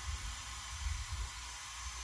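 Steady background hiss with a low hum underneath and a few faint, soft knocks.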